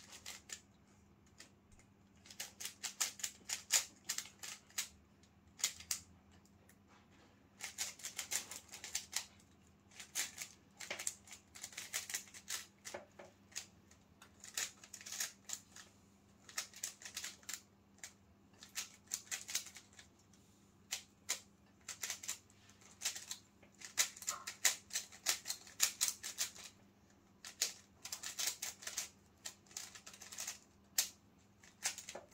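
Plastic 3x3 Rubik's Cube being turned fast by hand during a solve: rapid clicking of the layers in flurries of a few seconds, broken by short pauses.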